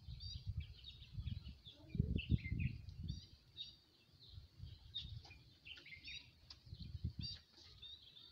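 Small birds chirping in many short, high calls, with uneven low rumbling on the microphone.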